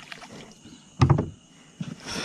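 A single loud knock on the boat about a second in, ringing briefly, with a softer knock near the end, as a fishing net is handled over the side.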